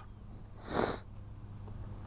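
A man's single short sniff, about half a second in, in a pause between words.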